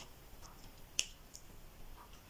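A single sharp click about a second in, with a couple of faint ticks around it, over low room noise.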